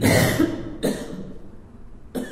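A person coughing twice, about a second apart; the first cough is the louder.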